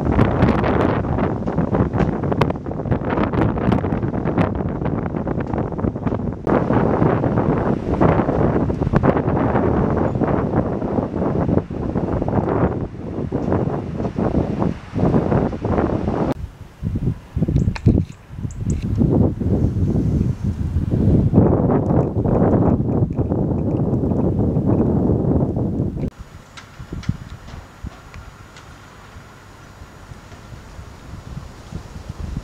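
Gusty wind buffeting the microphone, loud and uneven. It drops to a much quieter wind near the end.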